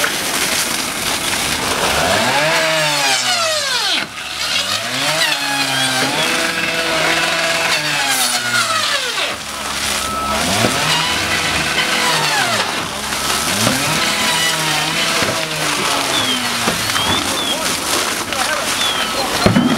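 A small engine revved up and down again and again, each rise and fall lasting a second or two, over a steady rushing hiss of hose streams on the fire.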